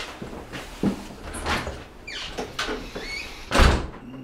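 A door being opened and shut: a few clicks and rubbing scrapes, then a heavy thud near the end as it closes.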